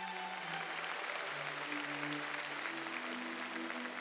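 Soft background music of slow, sustained held notes that shift in pitch every second or so.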